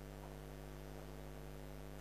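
Faint, steady electrical mains hum: one low pitch with a stack of overtones, holding constant.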